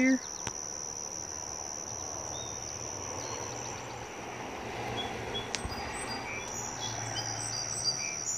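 Steady high-pitched chorus of insects, one continuous trill held at the same pitch throughout.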